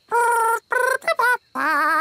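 A cartoon alien voice speaking a made-up gibberish language: three short, wobbling, sing-song phrases.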